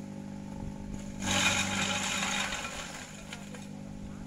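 Kelani Komposta KK100 compost shredder running steadily with a low hum. About a second in, a loud burst of chopping noise lasts about a second and a half as gliricidia branches go through its blades.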